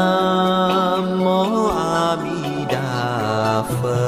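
Buddhist devotional chant music: a voice sings long held notes, sliding between pitches a couple of times.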